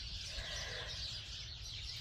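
Faint outdoor ambience: distant birds chirping over a steady low rumble.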